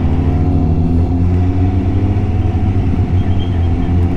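Motorcycle engine running steadily at low road speed, recorded from the bike's onboard camera.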